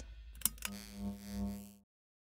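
A sharp click about half a second in, a second smaller click, then a steady low electronic tone with overtones that swells and fades, cutting off just before the end.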